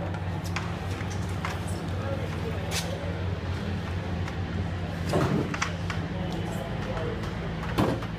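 A steady low hum, with scattered clicks and knocks as a racing sidecar outfit is handled on a tiled paddock floor; two louder knocks come about five seconds in and near the end.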